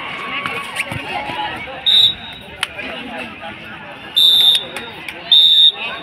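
Referee's whistle blown three times, one steady high note each time: a short blast about two seconds in, then two longer blasts near the end, over the chatter and shouts of players and onlookers.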